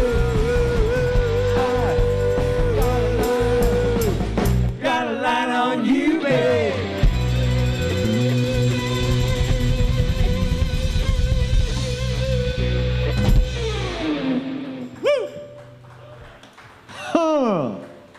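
Live rock band with electric guitar, keyboards, bass and drums playing the close of a song, a long note held early on. About fourteen seconds in the song ends and the final chord dies away, and a man's voice is briefly heard near the end.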